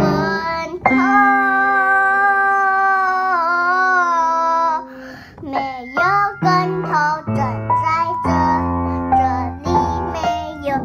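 A young child singing to her own piano playing: a long held note that wavers slightly, then shorter sung phrases over repeated piano chords.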